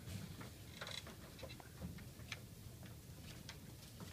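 Sheets of paper rustling and tapping on a tabletop as they are handled and turned over, an irregular scatter of short soft clicks over a low steady room hum.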